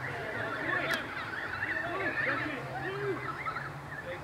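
Many overlapping voices of players and spectators shouting and calling across the ground, with no clear words, and one sharp click about a second in.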